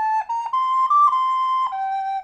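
Soprano recorder playing a slow hymn melody, one clear note at a time, tongued: it steps upward to a high note about halfway through, settles back onto a held note, then drops lower near the end.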